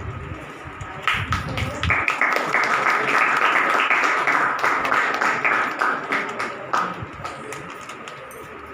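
A small group clapping, the applause building about a second in, at its fullest in the middle and dying away near the end.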